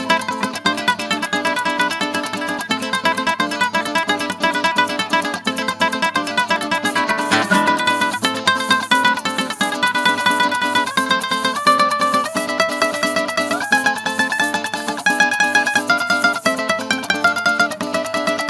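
Bandola llanera playing a fast, picked melody of quick plucked notes that climbs higher in the second half, over a strummed cuatro accompaniment.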